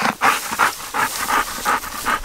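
A dog panting quickly, about three breaths a second.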